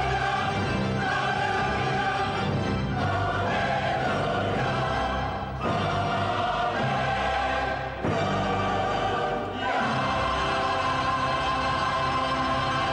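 Mixed choir singing a sacred choral piece with orchestral accompaniment, in phrases with short breaks between them.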